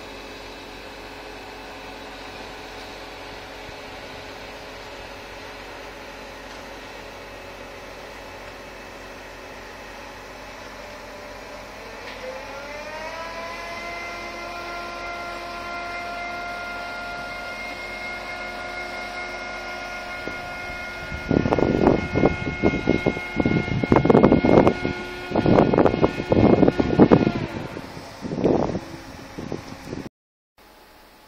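Truck-mounted crane's engine and hydraulics running with a steady whining hum. About halfway through, the whine glides up in pitch and then holds at the higher pitch. Loud, irregular bursts of noise break in over it for the last third, and the whine stops shortly before the end.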